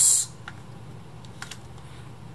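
Low steady hum from the switched-on reel-to-reel tape deck, with a few light clicks and knocks as the plastic tape reel is handled and lifted off its spindle.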